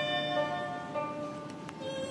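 Chinese traditional string ensemble led by erhu playing a melody of held bowed notes, with a yangqin hammered dulcimer in the group; the playing softens a little about midway.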